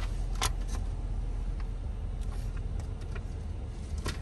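2013 Jeep Wrangler JK's 3.6-litre V6 idling steadily, heard from inside the cab as a low rumble, with a few light clicks and rustles from a paper sheet being handled.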